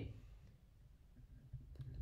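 Near silence: faint room tone, with a faint short click near the end.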